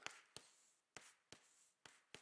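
Faint taps and scrapes of chalk on a blackboard as numbers are written, about five short clicks spread across two seconds.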